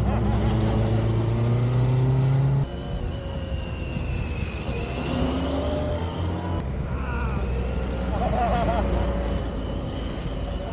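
Motorcycle engine running at low speed, loud and steady for about the first two and a half seconds, then dropping suddenly to a lower level, with its note rising and falling as the bike rides away.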